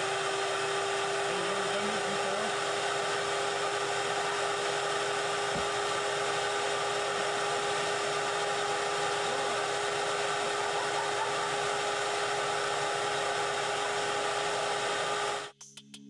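Vacuum cleaner running steadily with a constant whine, sucking the air out of the plastic wrapping around a foam cushion to compress the foam. It cuts off suddenly near the end.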